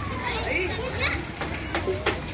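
Children's voices calling out and chattering over steady street background noise.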